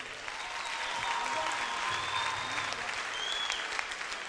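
Concert audience applauding steadily.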